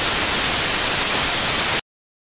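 Television static: an even white-noise hiss used as a transition, cutting off suddenly near the end into dead silence.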